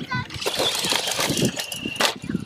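Radio-controlled short-course truck accelerating away over loose dirt: a hiss of tyres throwing grit, with a steady high motor whine near the end.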